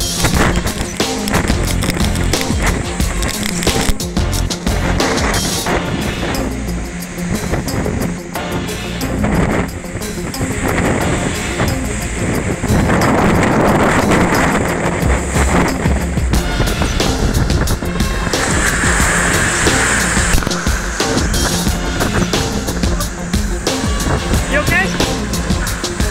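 Storm surf crashing and churning with heavy wind noise, mixed with background music.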